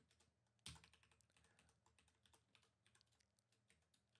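Faint computer keyboard typing: a run of quick key clicks, with one slightly louder click about two-thirds of a second in.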